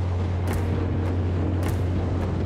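Outboard motor of a small aluminium boat running steadily under way, a low hum with rushing water and wind. Two short hull slaps on the chop come about a second apart.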